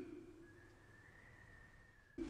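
Near silence: a voice fades out at the start, then a faint thin high steady tone runs under the silence.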